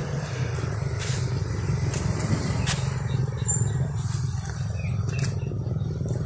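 Motorcycle engine running steadily at low revs, an even low rumble.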